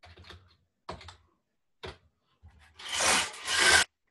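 Rubbing and scraping noises picked up by a microphone on a video call: a few short scuffs, then a louder rasping rush of about a second near the end, in two surges that cut off suddenly.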